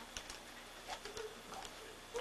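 Faint scattered light clicks and small rustles in an otherwise quiet room.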